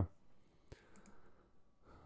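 Quiet pause with a single short click a little over a third of the way in, then a soft breath near the end.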